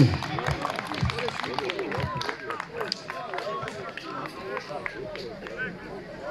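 A crowd of spectators talking, several voices overlapping at once, with scattered short clicks and knocks among them.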